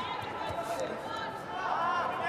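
Faint, indistinct voices over the steady background noise of a large sports hall.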